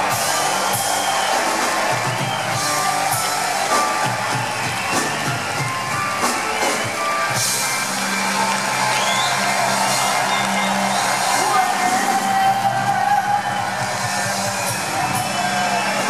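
Live rock band with electric guitar, bass guitar and drums playing, with a crowd cheering and whooping over the music.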